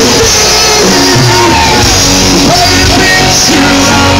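Live rock band playing a power ballad, with sung vocals over the band.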